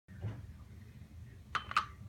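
Two sharp metallic clinks about a quarter second apart as the regulator of a compressed-air tank knocks against the air-source adapter under a paintball marker's grip while being lined up to attach.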